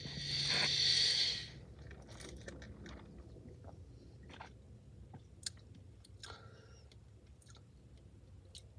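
Soda sipped through a plastic straw: a loud slurping hiss for about a second and a half at the start, then scattered small mouth clicks.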